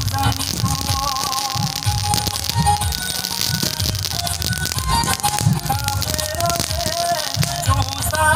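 Music with a wavering melody over a low pulsing beat, mixed with a dense, continuous crackle from fireworks going off.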